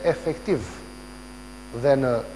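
Steady electrical mains hum under a man's voice, which breaks off for about a second in the middle, leaving only the hum.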